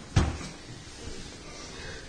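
A single heavy thump about a fifth of a second in, followed by quiet room noise.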